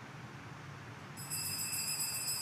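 Steady low hiss, then a little over a second in a high, bright ringing tone with a slight shimmer starts and holds.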